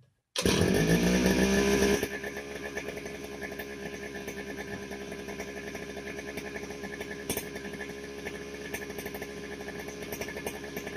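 A two-stroke grass cutter (brush cutter) engine catching on the pull-start: it fires about half a second in and runs fast and loud for about a second and a half, its pitch rising, then drops suddenly to a steady, quieter idle.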